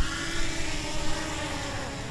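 Small quadcopter drone's propellers buzzing steadily as it descends and touches down on gravel.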